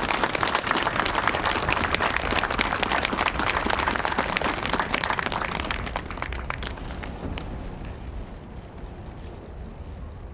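Audience applauding outdoors, the clapping thinning out and fading about halfway through, over a low wind rumble on the microphone.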